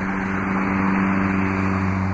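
An engine running steadily: a low, even hum with a rushing noise over it.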